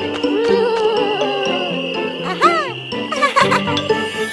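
Cartoon soundtrack for a night scene: a steady high, insect-like drone over stepping low notes and wavering, warbling tones. A rising-and-falling swoop comes a little over two seconds in, followed by a short burst of quick clicks.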